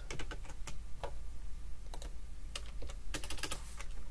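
Typing on a computer keyboard: scattered keystrokes with short pauses, then a quick run of keys a little after three seconds in.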